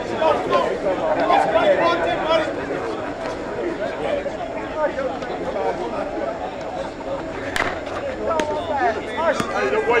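Players and onlookers chattering and calling out at a softball game. About three-quarters of the way through there is a single sharp crack of a bat hitting the ball, with a few lighter knocks after it.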